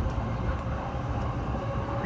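Running noise of a JR Yamanote Line commuter train heard from inside the car while it is in motion: a steady low rumble of wheels on rails.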